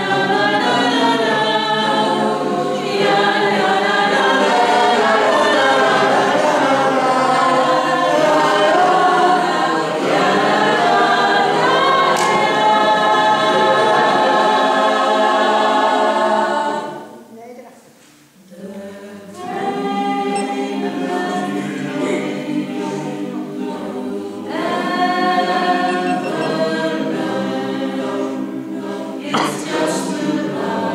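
Mixed choir of men's and women's voices singing together. The singing breaks off briefly about seventeen seconds in, then starts again a second or so later.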